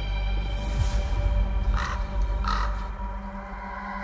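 A corvid cawing twice, two short calls a little under a second apart, over a sustained musical drone with a deep low rumble.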